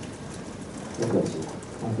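A man's voice speaking Japanese after a one-second pause, over a steady background hiss with faint ticks.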